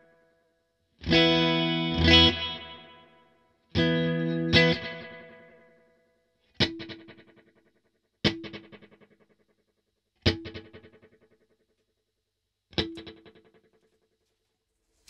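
Electric guitar played through a Strymon El Capistan tape-echo pedal while its tape crinkle setting is adjusted: two pairs of strummed chords, then four short chord stabs, each dying away with closely spaced echo repeats. The delay time is short, too short to really hear the crinkle.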